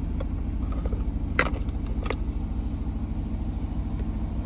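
Aston Martin DB11's engine idling steadily, heard from inside the cabin. Two sharp clicks come about a second and a half in and again half a second later.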